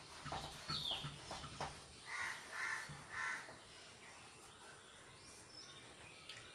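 A bird calling three times in quick succession, each call short and harsh. Before it, in the first second and a half, come light scrubbing and knocks from a whiteboard duster wiping the board.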